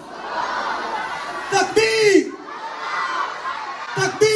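A large audience calling back together in a hall, answering a spoken greeting of peace. About halfway through, a man's amplified voice calls out once over the crowd.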